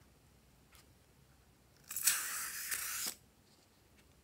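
The contents of a filled balloon squirting out of its neck into a tray: a single hissing, spluttering spurt a little over a second long, starting about two seconds in.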